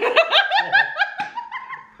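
A woman and a man laughing hard, the woman's high-pitched laugh loudest: a quick run of short laughs, then one drawn-out high note that trails off near the end.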